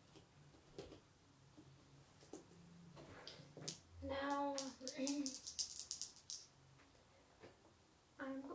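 Light clicks and taps of hands handling pieces on a gaming table, with a brief low murmured voice about four seconds in, followed by a quick run of small sharp clicks lasting about a second.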